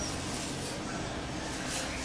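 Faint steady hiss of room tone with no distinct sound events.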